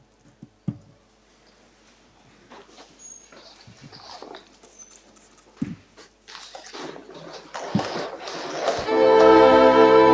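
An audience getting to its feet: scattered thumps of seats and low shuffling and rustling. About nine seconds in, bowed-string music starts loudly, opening the national anthem.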